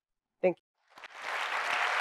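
Audience applause that starts about a second in and swells quickly into steady, dense clapping.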